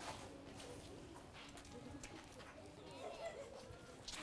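Faint, distant children's voices with a few light taps, over quiet outdoor ambience.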